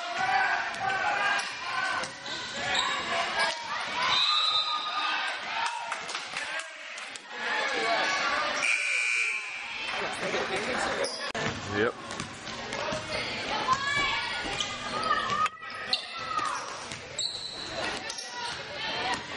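A basketball bouncing on a gym floor amid spectators' voices and shouts. A steady high whistle tone lasts about a second, about nine seconds in, which fits a referee's whistle stopping play.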